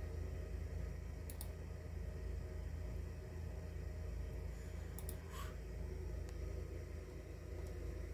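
Computer mouse button clicking a few times, a quick pair about a second in and another pair about five seconds in, over a steady low hum.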